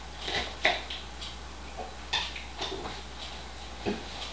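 About half a dozen light, irregular clinks and taps of tableware on a surface.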